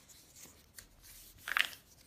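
A sheet of A4 paper being folded accordion-style and its fold pressed flat by hand: faint rustles, with one louder, brief paper rustle about one and a half seconds in.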